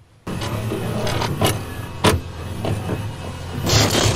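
Opening sound effects of a retro synthwave-style video intro. A steady low hum begins suddenly just after the start, with several sharp clicks and a louder burst near the end, leading into the intro music.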